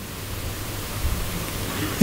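Steady, even background hiss with a faint low hum, picked up by the recording between spoken phrases.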